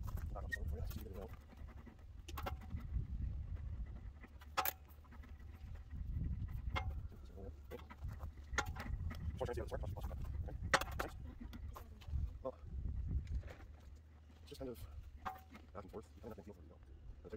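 18-gauge steel sheet being rolled back and forth through an English wheel. A low rolling rumble swells and fades with each pass, with sharp clicks every couple of seconds.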